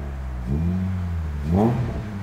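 Honda Jazz GK's 1.5-litre L15A four-cylinder engine, breathing through a BRD header and exhaust, being blipped. The revs rise about half a second in, hold steady, and rise again sharply near the end.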